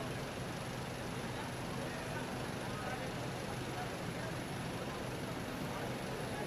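Steady airport-apron noise: the low hum of idling airside shuttle buses under a constant thin high whine, with faint indistinct voices.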